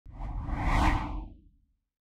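A single whoosh sound effect with a deep rumble underneath, swelling for about a second and then fading away, as a logo reveal.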